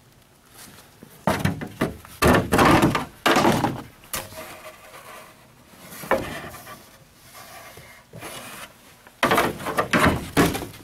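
Plastic motorcycle fairing pieces being handled and knocked about: a string of separate thuds and scrapes, the loudest coming a second or two in and again near the end.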